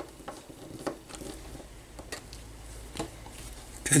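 Small hand screwdriver driving a small screw into a plastic RC car suspension part, with a few faint clicks and light scrapes of the driver and plastic pieces being handled.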